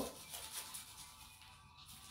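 Faint rustling rub of a plastic bag being smoothed over glued decoupage rice paper on a wooden box, pressing the sheet flat from the centre outward so no wrinkles remain. Soft music plays faintly underneath.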